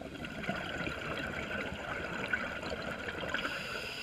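Scuba diver's exhaled bubbles gurgling and crackling out of the regulator underwater, one exhale lasting nearly four seconds.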